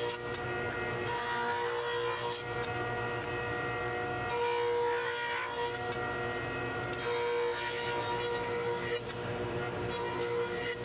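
Old cast-iron jointer running with a steady whine, growing louder with a rasping cut about three times as short pieces of hickory and ash are pushed across the spinning cutterhead to flatten them.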